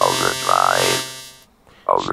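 A robotic vocoded voice saying "overdrive" once, with a dense buzzy tone. It comes from a robot-voice sample run through the Vocodex vocoder, and it trails off by about a second and a half in.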